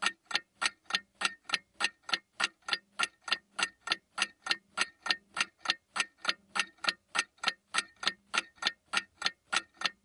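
Steady clock-like ticking, about four sharp ticks a second, keeping an even pace throughout.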